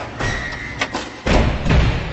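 Logo-animation sound effects: a quick series of sharp hits and swishes, then a heavy low thud about halfway through that rings out.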